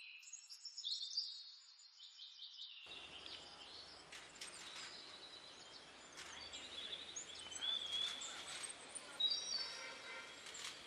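Birds chirping and calling in short, repeated high notes over a steady outdoor background hiss. For the first few seconds the background is thin; a fuller outdoor ambience cuts in about three seconds in.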